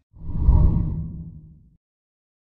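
Deep whoosh sound effect accompanying an animated graphic transition: it swells in quickly just after the start, is loudest about half a second in, and fades away over about a second.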